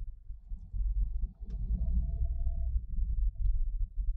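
Low rumble of a car driving, heard from inside the cabin: road and engine noise, growing louder about half a second in, with a faint thin tone for a couple of seconds.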